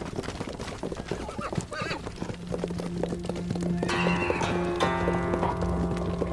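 Many horses' hooves clattering on hard ground as a mounted troop advances, with a horse whinnying partway through, over sustained low film-score music.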